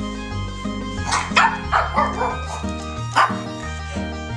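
Shih tzu giving a quick run of short barks about a second in, then one more bark near the end, over background music.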